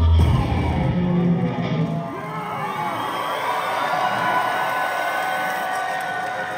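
The last bass-heavy notes of a live industrial rock song stop about two seconds in, and a concert crowd is left cheering and whooping.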